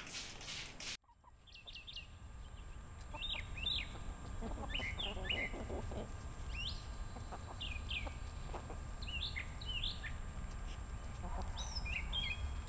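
A short stretch of hissing cuts off about a second in. Birds then call outdoors in a string of short chirps and falling whistles, scattered throughout, over a low steady rumble.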